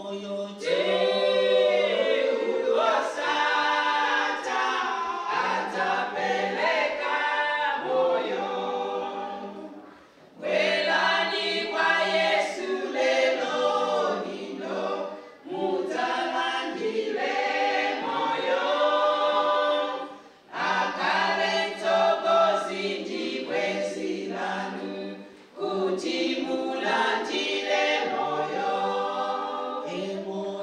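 A small group of women singing together a cappella into microphones, in sung phrases broken by short pauses about every five seconds.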